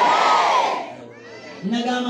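A man's loud, hoarse shout into a microphone, rising and falling and breaking off about a second in; after a short lull he starts speaking again near the end.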